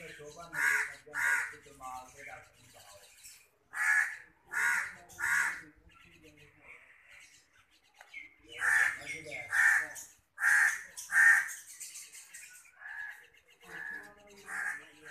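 Juvenile long-tailed shrike giving harsh, rasping calls, repeated in groups of two to four with short pauses between the groups.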